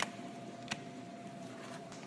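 Wall light switches being flicked, two sharp clicks under a second apart and a couple of fainter ticks near the end, over a faint steady electrical hum.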